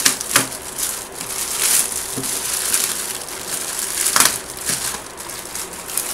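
Clear plastic wrapping crinkling and rustling as it is pulled off a plastic kit box, with several sharp crackles; the loudest comes about four seconds in.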